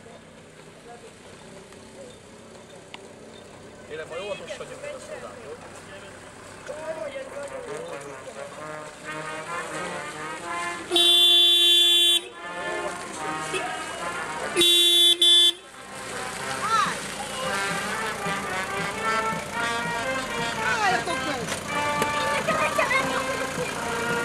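Vehicle horn blown twice, about a second each and some three seconds apart, about halfway through, over people talking.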